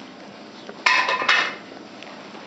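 West Highland White Terrier puppy giving two short, high-pitched yips in quick succession about a second in.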